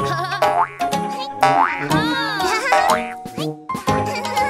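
Children's cartoon background music with cartoon sound effects: three quick rising pitch glides, about a second apart.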